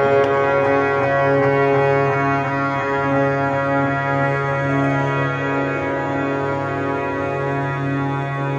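Harmonium playing sustained chords over a steady low held note, the upper notes changing a few times.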